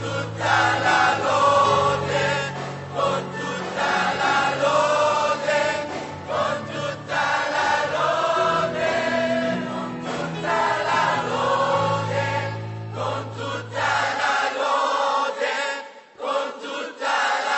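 Mixed youth choir of men and women singing a gospel worship song, with low sustained bass notes beneath the voices that drop out near the end.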